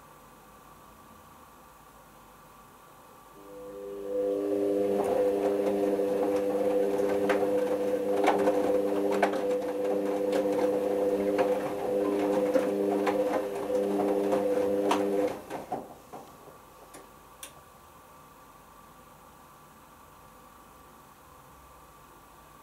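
Hoover Optima OPH714D washing machine in its main wash: the drum motor starts about three seconds in and whines steadily for about twelve seconds as the drum tumbles the cottons, with light clicks and taps from the load, then stops and the drum rests.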